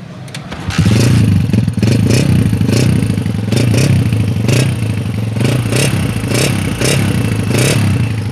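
A 2003 Honda CG125's single-cylinder four-stroke engine starts about a second in and runs, with sharp pulses about twice a second. It is being run so that its engine sound can be checked.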